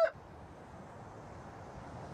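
The last instant of a rooster's crow, breaking off right at the start, then a faint steady background hiss.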